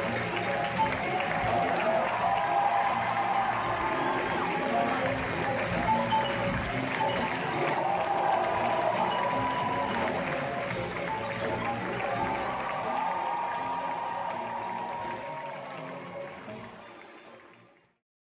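Stage musical's curtain-call music with audience applause, steady for most of the time and then fading out over the last few seconds.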